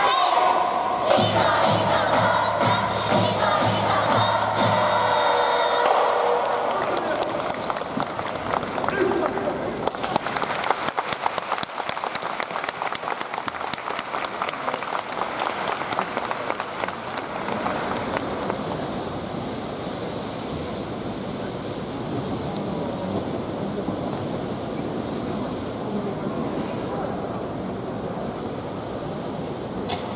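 A brass band of saxophones, trumpets and sousaphones holds a closing chord that ends about six seconds in. Audience applause and cheering follow, then fade to a steady crowd murmur.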